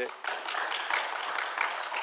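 Audience applauding, beginning a moment in.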